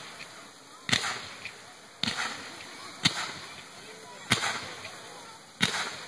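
Fireworks going off: five sharp bangs roughly a second apart, each fading off in a noisy tail.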